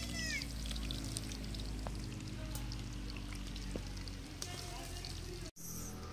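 Dough flatbreads frying in a pan of hot oil, the oil sizzling with scattered faint crackles. The sound cuts out briefly near the end.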